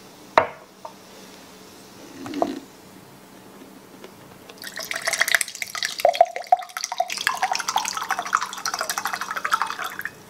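Water poured from a pitcher into a glass tumbler: a splashing stream starts about halfway through and runs on, its pitch rising as the glass fills. Before the pour there is a sharp click and a light knock.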